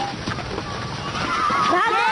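A crowd of young children shouting and screaming together as they run, many voices overlapping; it starts about a second in and quickly grows loud.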